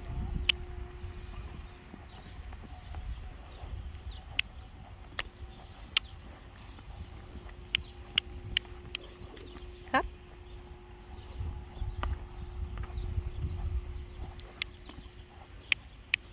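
A riding pony's hooves thudding unevenly on the sand footing of an arena as it canters, with scattered sharp clicks.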